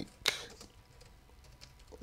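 Computer keyboard being typed on: a sharp keystroke click just after the start, then several fainter, separate clicks.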